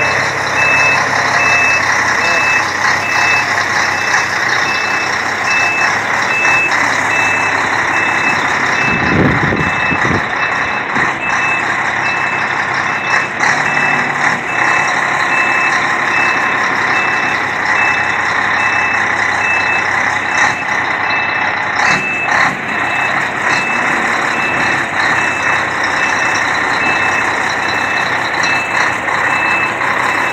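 Diesel semi-truck with a loaded flatbed trailer reversing: its backup alarm beeps steadily at one pitch over the running engine, with a short low rumble about nine seconds in.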